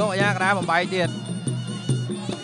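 Traditional Khmer boxing ring music: a shrill reed oboe (sralai) plays a fast-wavering, trilling phrase in the first second, over a steady drone and a regular drum beat that carries on.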